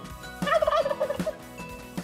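A turkey gobble: one rapid warbling gobble about half a second in, lasting under a second.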